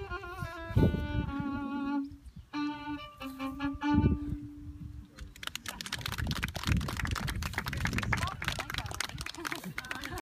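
A fiddle plays a slow tune with long held notes and stops about five and a half seconds in. It gives way to close, dense rustling and crackling.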